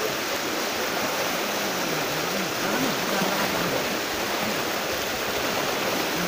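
Fast, turbulent water rushing steadily through a channel, a continuous churning of white water.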